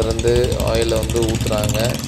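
A person talking, over a steady low hum that fades out near the end.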